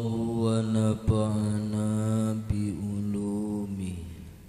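A man's voice chanting Arabic in long, steady held notes, fading out at the end.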